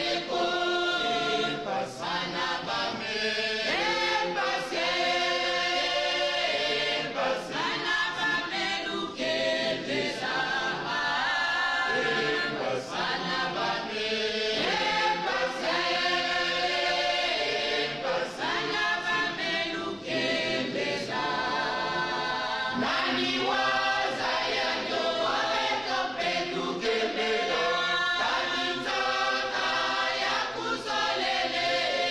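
Choir of men and women singing together, without a break.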